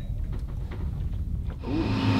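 A low rumble with a few faint clicks, then, about a second and a half in, the steady drone of a sailboat's inboard engine cuts in as the boat motors along in calm wind.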